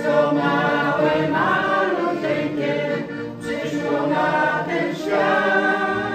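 Small mixed folk choir singing a Polish Christmas carol (kolęda) in several voices, with piano accordion accompaniment.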